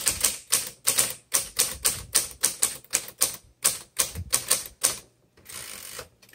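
A 1969 Smith Corona Classic 12 manual typewriter being typed on at a steady pace, about four sharp keystrokes a second. About five seconds in, the typing stops and the carriage is pushed back, giving a brief steady rasp.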